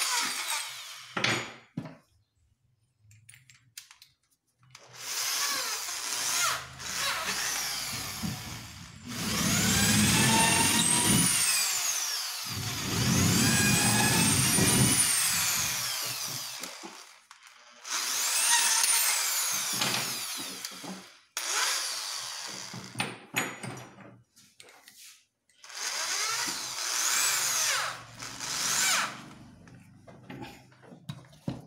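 A handheld power drill working into a plywood cabinet panel in about six separate runs, the longest two in the middle. Its motor whine rises and falls in pitch within each run as the trigger is squeezed and let off.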